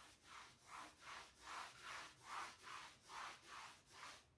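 A soft pink eraser wiping chalk off a blackboard in quick back-and-forth strokes, about ten faint swishes, roughly two and a half a second.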